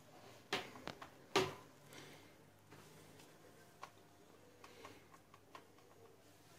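Faint clicks and taps of fingers and barfi pieces against a plastic chocolate mould tray as the pieces are set into place: three sharper clicks in the first second and a half, the loudest about a second and a half in, then a few light scattered ticks.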